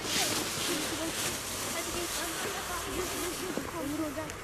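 Children's voices calling and chattering on a snow slope, with the hiss of a child sliding down the snow that fades over the first second and a half.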